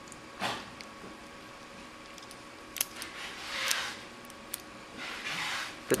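Faint handling of small tattoo machine parts: a few light clicks and short rubbing noises as the bearing and machine are handled.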